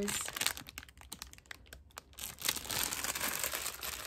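Clear plastic packaging crinkling and crackling as it is handled, sparse crackles at first and denser crinkling from about two seconds in.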